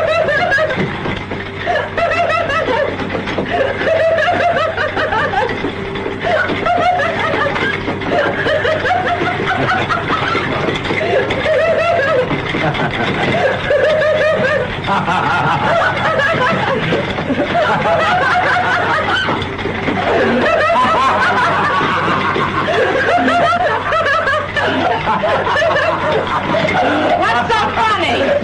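A woman and a man laughing in long, continuous bouts.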